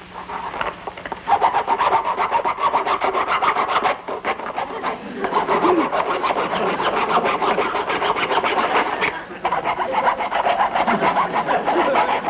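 Rapid, even scraping strokes, about ten a second, in three long runs broken by brief pauses about four and nine and a half seconds in.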